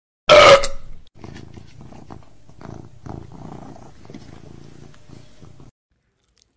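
Domestic cat gives one short, loud cry, then purrs steadily in a low, pulsing rhythm of about two to three beats a second. The purring cuts off suddenly near the end.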